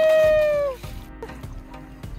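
A toddler's long, high-pitched held vocal sound at one steady pitch, sagging slightly and stopping a little under a second in; after that, only faint noise of shallow water.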